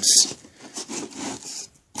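Box cutter blade slicing along the tape seam of a corrugated cardboard case: a short sharp rip at the start, then a run of faint scraping strokes.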